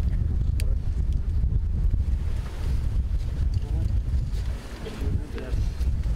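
Wind buffeting the microphone, a fluctuating low rumble, with murmured voices of a crowd underneath, clearest in the second half.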